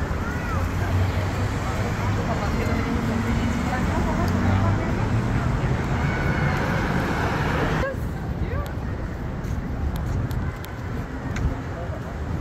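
Street traffic noise from cars passing on a busy city street, a steady dense rumble with engine hum; about eight seconds in it suddenly turns duller and a little quieter.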